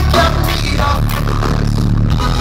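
A reggae-rock band playing live through a PA: electric guitar, bass and drums.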